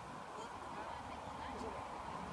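Several short, faint bird calls, goose-like honks, over a low steady rumble.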